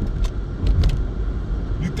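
Steady low rumble inside a car's cabin, with a few faint clicks about a quarter second and just under a second in.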